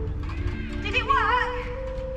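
A horse whinnying once about a second in, a short quavering call that falls in pitch, over background music of long held notes.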